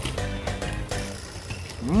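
Background music with held notes and a steady low bass; near the end a man gives a short, rising 'hum' as he tastes the candy.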